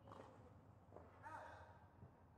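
Near silence: a faint low background hum, with a light tap at the very start and a brief, soft voice sound a little past halfway.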